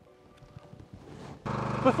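Near quiet with a faint steady tone, then about one and a half seconds in a Kubota excavator's diesel engine comes in, running steadily.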